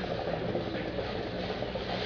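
A steady low mechanical hum with a constant hiss behind it, holding level and pitch throughout.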